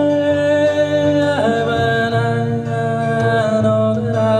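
A man singing long held, wordless notes into a microphone over an acoustic guitar, sliding to a new held note about a second and a half in.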